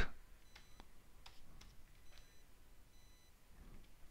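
A few faint, scattered computer keyboard clicks, with two brief, faint high tones, one under a second in and one in the second half.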